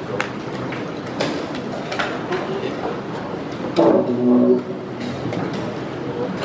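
Wooden chess pieces knocked down on the board and chess clock buttons pressed during fast blitz play, heard as a few sharp clicks over a steady background din of voices in a hall. A louder voice rises briefly about four seconds in.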